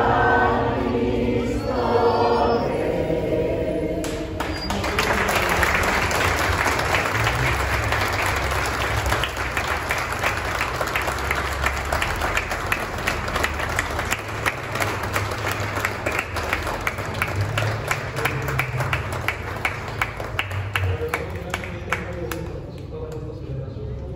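Congregation singing together in a large, echoing church, then breaking into applause about four seconds in; the clapping carries on and slowly thins out.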